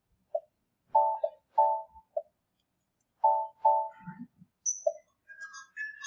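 An electronic ringtone-like tune of short beeping tones, single blips and paired chords, that plays through twice about three seconds apart.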